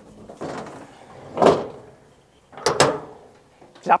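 Hinged metal sideboard extension on a tipper trailer being swung up by hand: a swelling rush of noise as it swings, then two sharp clacks close together near three seconds in as it closes into place.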